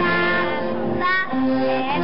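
Children singing a Dutch folk dance song in held, melodic notes, with instrumental accompaniment.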